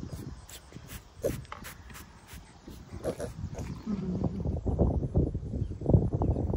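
A farm animal making several short calls over rustling, with louder low rumbling and handling noise building in the second half.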